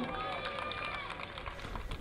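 Outdoor stadium ambience: a low, even background with faint, distant voices.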